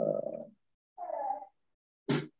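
A person's drawn-out hesitation sounds while pausing mid-sentence: a long 'ehh' at the start, then a shorter one about a second in that bends in pitch.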